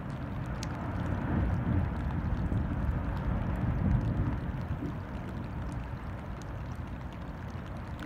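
Low, uneven rumble with wind and water noise, swelling slightly in the first few seconds and then easing, heard from a boat facing a glacier's ice front.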